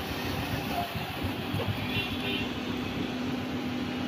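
Steady background noise of an open motorcycle workshop, with a faint low hum throughout and no distinct event standing out.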